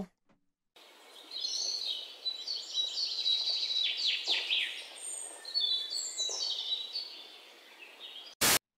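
Birds chirping and singing over a steady background hiss, many short, quick chirps and falling notes, starting about a second in and growing fainter near the end.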